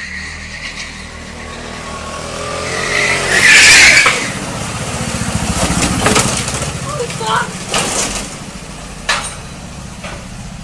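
A motor vehicle engine running, with people's voices over it. The loudest moment is a loud rushing burst about three and a half seconds in, followed by a few sharp knocks later on.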